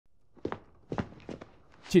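A few footsteps, about four short hits spread over the first second and a half, followed near the end by a man starting to speak.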